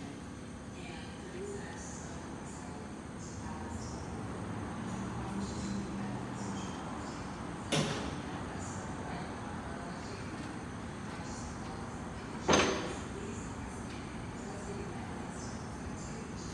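Steady low background noise, broken by two short knocks, one about eight seconds in and a louder one at about twelve and a half seconds.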